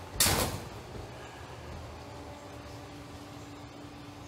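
A brief, sharp rush of noise about a quarter of a second in, then a steady faint background hiss, with a low steady hum joining about halfway through.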